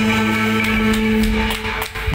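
Live band music from keyboard and electric guitar, a chord held steadily with a few sharp drum or cymbal strikes, fading down near the end.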